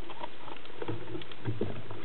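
Underwater sound picked up by a camera on a speargun: a steady hiss with scattered faint clicks and crackles, and a few low thumps in the second half as the gun and line are handled.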